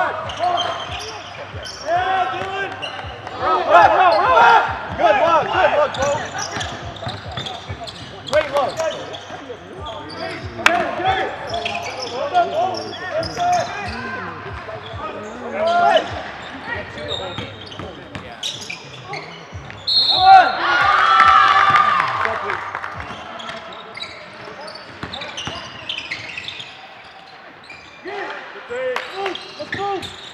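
Live sound of an indoor basketball game in a large, echoing gym: players' shouts and calls, with the ball bouncing on the hardwood floor. The voices get louder for a couple of seconds about twenty seconds in.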